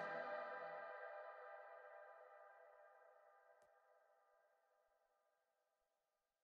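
The closing note of a tearout dubstep track ringing out: a sustained electronic chord fades over the first second or so and lingers very faintly into near silence. One faint tick comes a little over three and a half seconds in.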